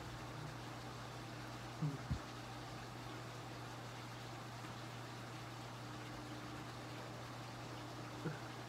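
Quiet background: a steady low hum under faint hiss. About two seconds in, a short low vocal sound falls in pitch and is followed by a brief click.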